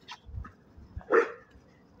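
A dog barking in short single barks, the loudest a little over a second in.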